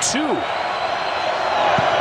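Steady noise of a large football stadium crowd as a long field-goal attempt is set up, with a short knock near the end as the ball is snapped.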